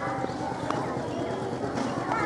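Children's voices, several talking at once, with a few short sharp clicks or knocks among them.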